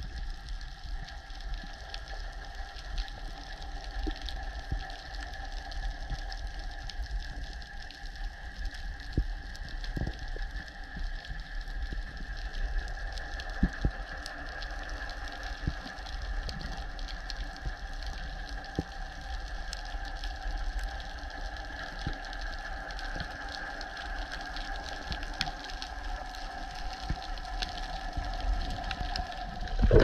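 Underwater sound picked up by a diver's camera: a steady mechanical hum holding two pitches, with scattered faint clicks through the water.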